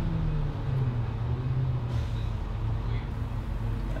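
City bus engine running, heard from inside the passenger cabin as a steady low drone, its pitch settling slightly about half a second in.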